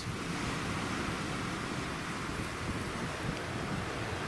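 Steady rushing of wind buffeting the microphone, blended with the wash of surf, with no distinct events.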